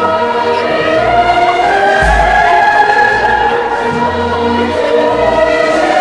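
A small group of men singing in chorus, holding long notes in harmony over a low pulsing bass line, in imitation of a boys' choir.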